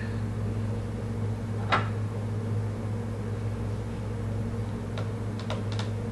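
Steady low electrical hum, with one sharp click about two seconds in and a few faint ticks near the end from a plastic eyeshadow palette being handled.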